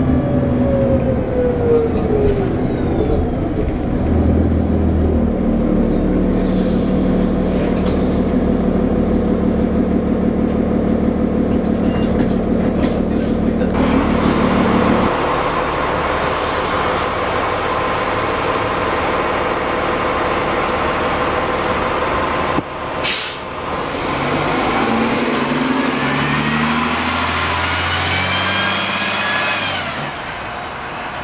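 2009 New Flyer D40LFR transit bus with a Cummins ISL inline-six diesel and Voith automatic transmission, first heard running on the move, then idling at a stop. About 23 s in there is a short sharp burst of air, then the bus pulls away, its engine note climbing in steps as the transmission shifts up.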